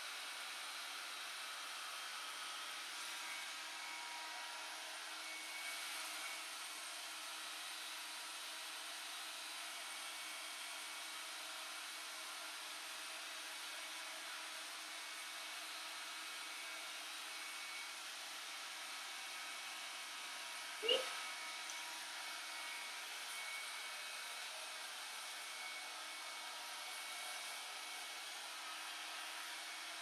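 Handheld hair dryer running steadily: an even rush of blown air with a faint motor whine.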